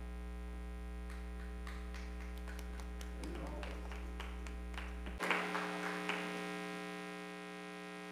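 Steady electrical mains hum with a row of buzzing overtones. Its deep low part cuts off suddenly about five seconds in, and faint scattered clicks and taps sound over it.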